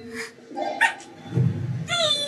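A few short, wordless whiny voice sounds from the compilation playing back, in broken bursts with a high, thin sound near the end.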